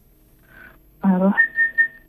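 A short voice over a poor telephone line, then a steady high tone on the line that breaks into three short beeps: interference on the call, which the host cannot account for.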